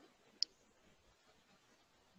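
A single short, sharp click about half a second in, over otherwise near-silent room tone.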